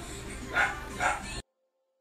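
A Pomeranian puppy gives two short yips about half a second apart over background music; the sound cuts off abruptly shortly after.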